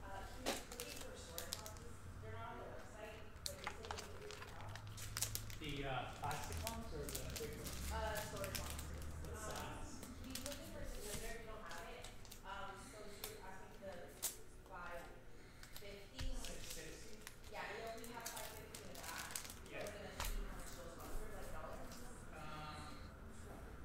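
Quiet, indistinct speech with many sharp clicks and crinkles from trading cards and foil card packs being handled.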